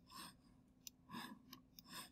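Near silence, with a few faint, short clicks of a computer mouse or trackpad and two soft, slightly longer sounds.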